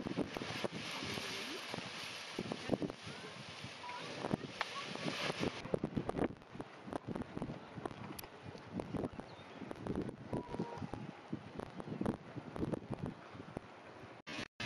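Gusty wind buffeting the microphone, an uneven rush with irregular blasts, strongest in the first half.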